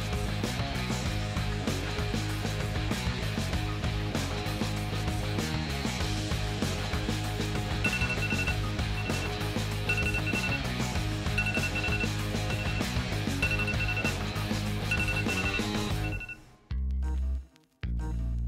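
Smartphone timer alarm beeping in short repeated two-tone bursts from about eight seconds in, marking the end of a 20-minute hydrogen-water production run, over background music with a steady beat. Both stop abruptly near the end.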